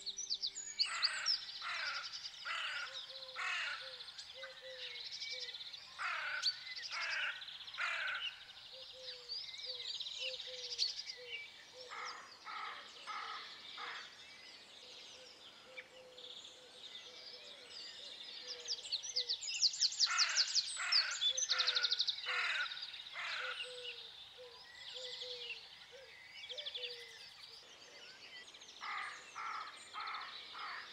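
Outdoor bird chorus: many small birds chirping and trilling, with runs of four or five harsher calls coming back every few seconds.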